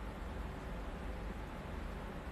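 Steady low rumble with a faint hiss underneath: background room noise, with no distinct sound events.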